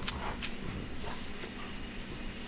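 A dog rolling and wriggling on its back on a concrete driveway: faint scuffing, with two light clicks in the first half second, over a steady low hum.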